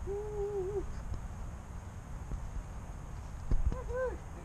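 A voice giving one steady, drawn-out 'hooo' hoot lasting under a second, then a short rising-and-falling vocal sound near the end, over a low rumble.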